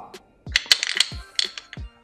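Wooden balls of a Tower of London cube puzzle clicking against each other and the wooden cube as a ball is pushed up into it from below: a handful of light, irregular clicks. Soft background music plays under them.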